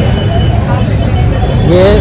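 Busy street noise: a steady, loud rumble of road traffic with background chatter.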